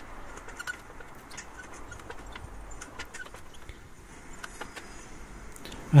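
Faint scattered clicks and ticks of slotted steel angle iron being bent by hand, its cut sections tapping together, over a low steady background hum.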